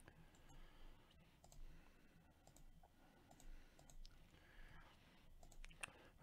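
Near silence broken by faint, scattered clicks of a computer mouse and keyboard, a few to the second at most, as names are copied and pasted into a spreadsheet.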